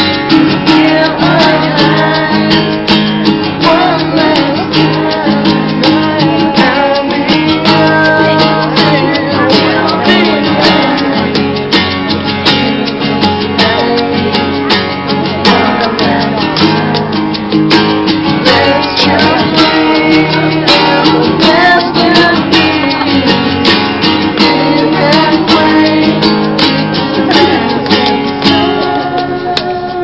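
Live acoustic band music: two acoustic guitars strummed together, with a hand shaker keeping the beat and a male voice singing.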